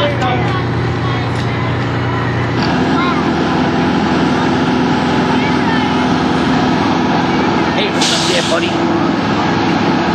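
Fire engine diesel running steadily while pumping a hose stream, with the spray hissing underneath. The engine note changes about two and a half seconds in, and a short, sharper hiss comes near the end.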